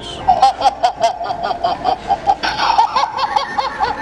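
Coffin-shaped electronic noisemaker toy playing a sound effect through its small speaker as its buttons are pressed: a rapid string of short laugh-like calls, about six a second, louder and harsher about two and a half seconds in.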